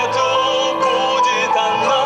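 Live acoustic song: a man singing a melody with wavering, held notes over his own acoustic guitar accompaniment.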